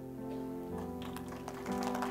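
Soft instrumental music of held, sustained chords that change twice, with a few light taps or clicks in the second half.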